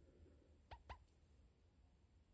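Near silence with two short, faint squeaky chirps close together a little under a second in.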